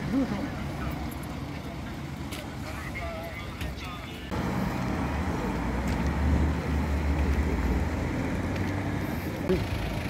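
Car engine running with a low, steady rumble as a car pulls away. It starts suddenly about four seconds in and is loudest around six to seven seconds, after a quieter stretch of traffic noise and faint voices.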